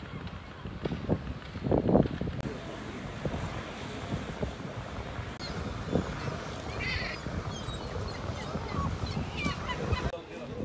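Wind rushing over the microphone by the sea, with a few seagull calls in the second half.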